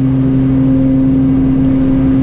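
Beechcraft King Air twin-turboprop engines and propellers at takeoff power during the takeoff roll, heard from the cockpit: a loud steady drone with a strong hum over a rumble.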